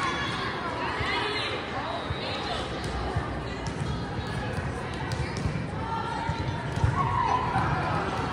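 Indistinct voices of players and spectators in a large gym, with frequent dull thuds of balls bouncing and being hit.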